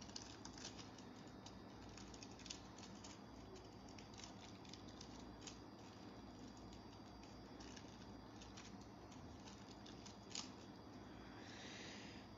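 Very faint crinkling and small scattered ticks of thin nail transfer foil being pressed onto a cured black gel nail tip and peeled off, with a slightly louder tick about two and a half seconds in and another near ten seconds.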